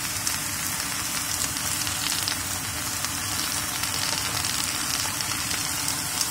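Kailan (Chinese broccoli) stir-frying in oil in a pan over high heat, a steady sizzle with small crackles.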